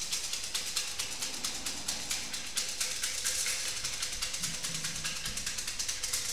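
Thai fortune sticks (siam si) being shaken in a cylindrical cup, giving a fast, even rattle of about eight shakes a second that keeps going without a break.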